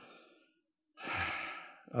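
A man's sigh: one breathy exhale about a second in, fading away within under a second, heard close on his microphone.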